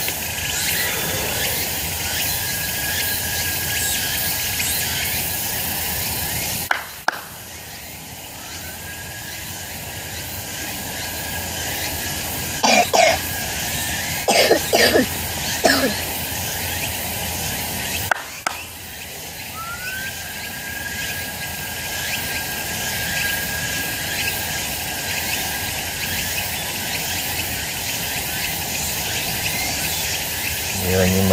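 Steady drone of insects with a thin high tone, which twice cuts off abruptly and returns. About halfway through come two brief clusters of short, sharp sounds.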